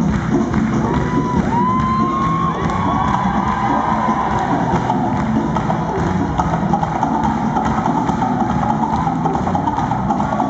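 Loud live band music with the crowd cheering and shouting over it; a few high, gliding cries about a second in.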